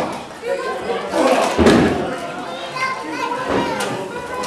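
A heavy thud on a wrestling ring's canvas about a second and a half in, with a smaller knock near the end, over the chatter and shouts of a small crowd, children among them, echoing in a large hall.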